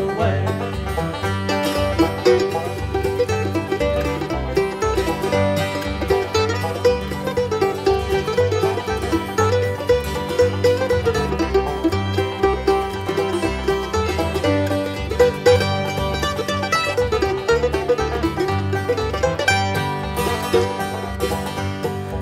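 Instrumental break in a bluegrass song, a five-string banjo picking the lead over a steady bass and rhythm backing, with no singing.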